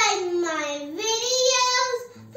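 A young girl singing in two long phrases, her voice holding notes that slide up and down.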